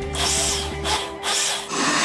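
Countertop blender motor grinding a thick sweet-corn batter: two short pulses, then running steadily from near the end.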